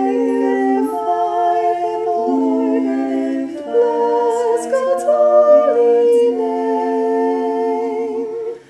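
Unaccompanied voices singing a slow meditative chant as a canon, several parts overlapping in harmony on long held notes.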